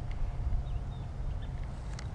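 Low, uneven rumble of wind buffeting the camera microphone, with a few faint, short high chirps.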